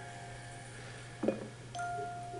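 Faint television soundtrack under a steady low hum: a brief pitched sound, like a short voice, just past the middle, then a held high musical note near the end.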